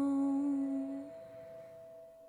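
A woman's voice holding a long final hummed note at the end of the song, cutting off about a second in. A single instrument note lingers after it and fades away.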